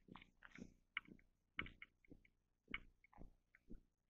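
Near silence, broken by faint, irregular small clicks and crackles.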